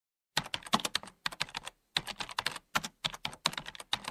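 Computer keyboard keystrokes as a typing sound effect: quick, irregular runs of key clicks. They start a moment in and break off for short pauses between runs.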